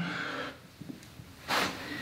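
A man's heavy breathing during push-ups: a breath trails off at the start, then a short, sharp breath comes about a second and a half in.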